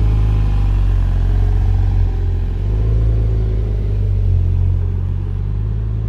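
Porsche 911 GT2 RS MR's twin-turbo flat-six idling, a loud, steady deep rumble heard close to the car.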